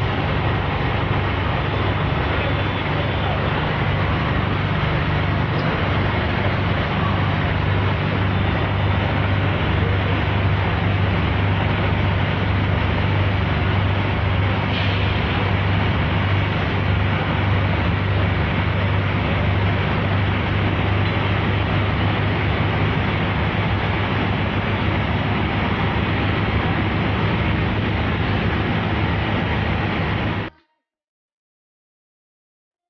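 Fire trucks' engines running steadily close by, a constant low drone under street noise.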